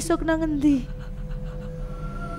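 A woman weeping: a wavering cry that slides down in pitch and breaks off about a second in. Soft sustained music notes carry on beneath it.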